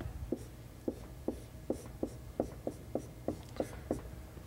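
Writing on a lecture board: about a dozen short, crisp taps and strokes, roughly three a second, as a term of an equation is written out.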